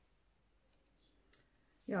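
Near silence: room tone, with one faint, short click a little past halfway. A woman's voice starts near the end.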